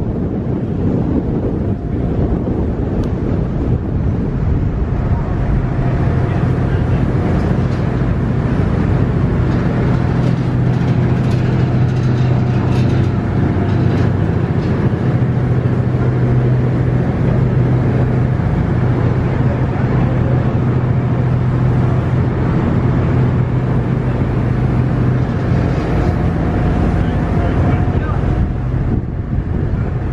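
Ferry's engines droning with a steady low hum on the open deck, mixed with wind buffeting the microphone and the rush of water.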